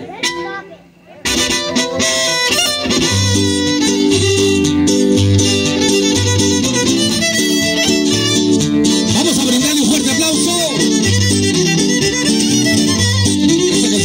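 A son huasteco trio playing the instrumental introduction of a huapango: the violin leads over strummed jarana and huapanguera, with a steady repeating bass pattern. The music starts after a short pause about a second in.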